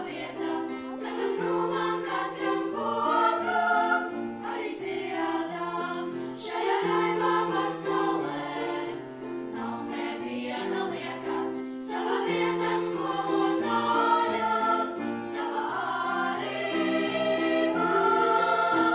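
Children's choir of girls singing a song in phrases with held notes, led by a conductor.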